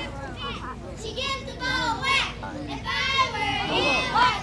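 Children's voices calling out and chattering, several at once, high-pitched and unclear, as at a youth softball game.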